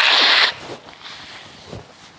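A man blowing his nose hard into a tissue while weeping: one loud, noisy burst about half a second long at the start, then a couple of faint sniffles.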